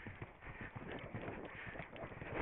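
A horse's hoofbeats on turf, a rapid run of dull thuds heard from the saddle as the horse moves across a cross-country course.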